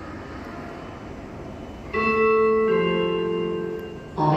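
Station public-address chime: two sustained notes, the second lower, starting about halfway through after a low background hum. It is the signal that a recorded passenger announcement is about to play.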